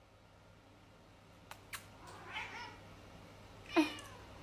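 A British Shorthair (British Blue) cat meowing: after two faint clicks comes a soft short meow about two seconds in, then a louder meow near the end.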